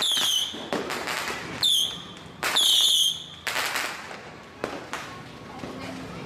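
Firecrackers going off in the street: three sharp bangs in the first three seconds, each followed by a short falling whistle, then a couple of smaller cracks as the noise dies down.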